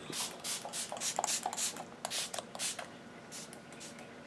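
Pump-mist bottle of makeup setting spray spritzed onto the face about a dozen times in quick succession, each a short hiss, the last ones near the end.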